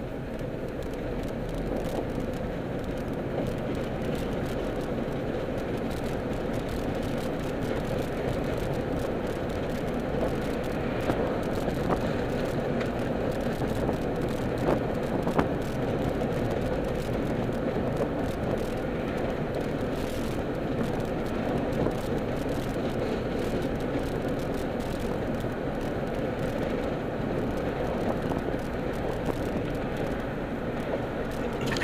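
Steady road and engine noise inside a moving car's cabin, with a few light clicks near the middle.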